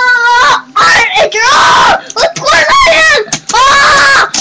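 A child's loud, high-pitched screams and yells in excited play, a string of held cries that slide up and down in pitch with short breaks between them.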